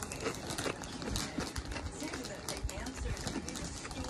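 A person chewing crunchy tortilla chips with the mouth closed: a run of irregular quick crunches and mouth clicks, with a faint voice underneath.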